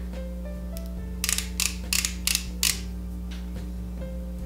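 A quick run of about six sharp clicks over a second and a half from a pen-style concealer tube being handled, over soft background music.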